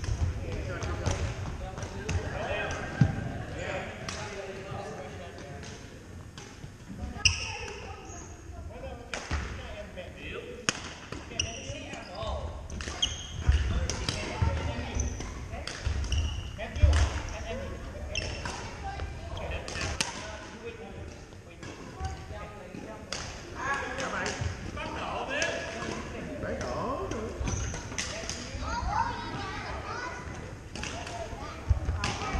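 Badminton doubles rally on a hardwood gym court: sharp racket strikes on the shuttlecock, sneaker squeaks and footfalls, repeated throughout and ringing in the large hall, with voices from other courts.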